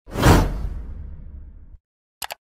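Whoosh sound effect for a smoke-burst transition: a sudden swoosh that peaks almost at once, then fades into a low rumble that cuts off near the end.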